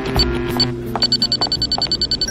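Handheld electronic tracking gadget beeping at one high pitch over background music. The beeps speed up about halfway through into a rapid run of about a dozen a second.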